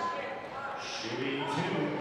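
Indistinct voices in a gymnasium during a stoppage in a basketball game, with one voice carrying from about halfway through.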